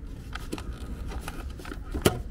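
Faint handling noise from a moving handheld camera: a steady low rumble with small scattered clicks and rustles.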